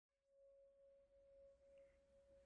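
Near silence with one faint, steady, pure tone held throughout: the quiet opening drone of an intro jingle.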